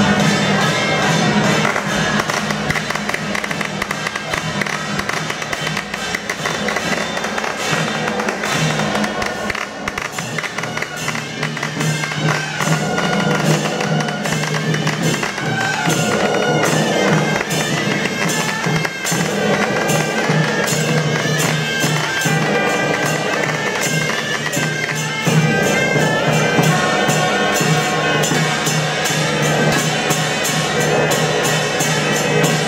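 Traditional Taiwanese temple-procession band: suona horns playing a loud, continuous melody over a steady beat of cymbals and drum.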